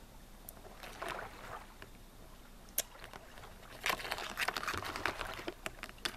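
Handling noise as small plastic toy figures are picked up and moved across a diorama set of rocks and moss: a few scattered clicks, then a denser patch of rustling and tapping in the last two seconds.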